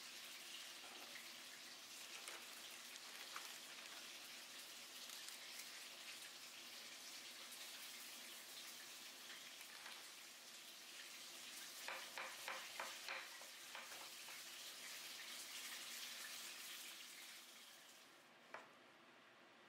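Faint steady hiss while food is being plated by hand. About two-thirds of the way through comes a quick run of about five light taps.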